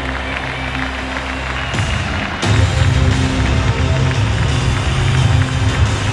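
Loud music with a steady, heavy bass. It breaks briefly about two seconds in, then comes back fuller and louder.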